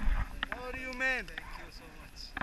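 A person's wordless vocal exclamation, one held vowel about half a second long that drops in pitch as it ends, after a low rumble and a few knocks at the start.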